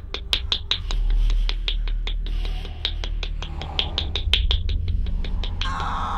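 A fast, even run of sharp clicks, about five a second, over a steady low rumble.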